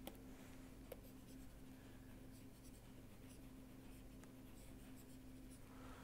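Near silence: faint taps and scratches of a stylus marking on a pen tablet, with a faint click about a second in, over a low steady hum.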